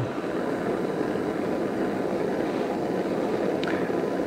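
Butane crème brûlée torch burning with a steady hiss as its flame scorches the edge of the wood.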